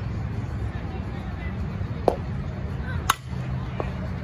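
A softball bat striking a pitched ball: a sharp ringing ping about three seconds in, with another sharp knock about a second before it. Both sound over a steady low outdoor rumble.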